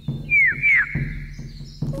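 Cartoon baby bird chirping loudly twice, two quick falling, whistle-like cheeps about half a second apart, with soft background music.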